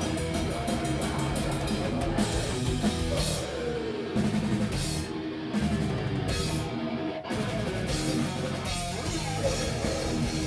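Live metal band playing: distorted electric guitar over a drum kit. The drumming is fast and dense at first, then a choppy stop-start passage in the middle leaves short gaps between stabs, and the full band comes back in about seven seconds in.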